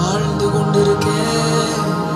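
A man singing a slow Tamil Christian worship song, his voice gliding over long sustained chords.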